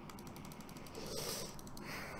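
Faint, rapid ratcheting clicks of a computer mouse scroll wheel being turned, lasting about a second and a half.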